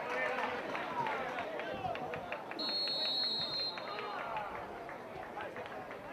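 Football-ground ambience: scattered voices of players and spectators calling out across the pitch, with one whistle blast of about a second near the middle.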